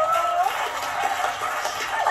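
Studio audience and contestants laughing, heard through a television's speaker.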